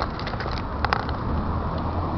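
Low, steady rumble of city traffic with camera handling noise, including a sharp click about a second in.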